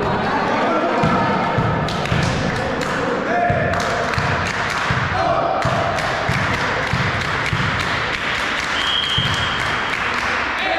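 Volleyball gym hall between rallies: voices of players and spectators, a ball knocking on the hard floor and hands a number of times, and a short, steady referee's whistle near the end.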